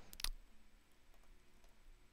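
Faint clicks of the panel buttons on a Casio Privia Pro PX-5S stage piano being pressed to key in a phrase number: two sharper clicks right at the start, then a few light ticks.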